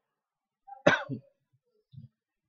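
A man clears his throat with a single short cough about a second in.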